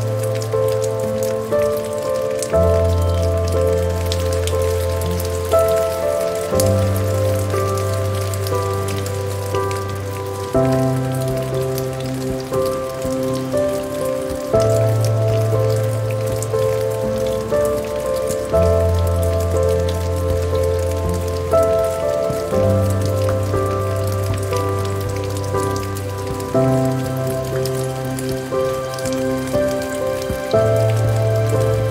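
Steady rain pattering, mixed with slow, soft relaxation music of sustained chords whose low notes change about every four seconds.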